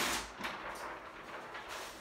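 Large sheet of flip-chart paper rustling and crackling as it is handled, loud at the start and then dropping to faint, scattered rustles.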